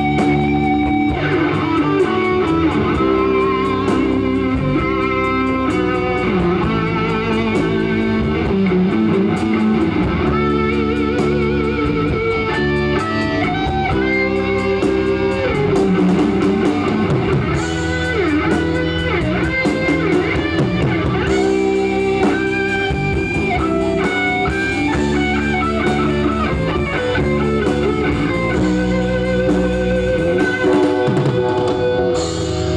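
Live rock band playing a guitar-led passage with no singing: electric guitars over bass guitar and drums.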